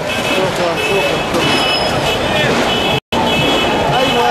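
Loud street noise of traffic mixed with crowd voices. Steady high tones sound twice, once early and again near the end. The sound drops out completely for a moment at an edit just after three seconds.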